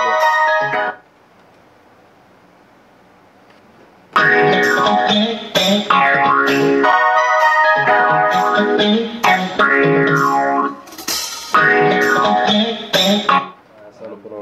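A melodic sample played back from an Akai MPC Live through studio monitor speakers while it is being chopped. It cuts off about a second in, then starts again about four seconds in and restarts several times, as if triggered from the pads, before stopping near the end.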